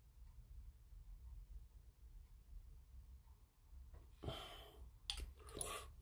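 Near silence: room tone, broken a little after four seconds by one soft exhaled breath and then a few small clicks in the last second.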